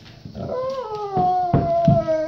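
Golden retriever giving one long, drawn-out howling whine that starts a little higher and slides down, then holds steady: the dog's 'talking' to be let out to pee. Two short knocks sound under it near the end.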